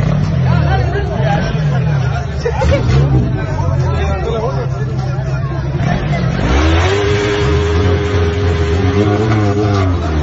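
Crowd chatter over an idling engine, then about six and a half seconds in an engine revs up and is held at a steady high pitch for about three seconds before easing, as a vehicle is readied at a drag-race start line.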